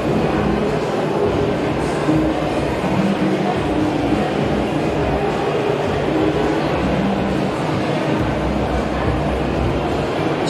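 Background music over a steady rumble of venue noise, without a clear beat or distinct strokes.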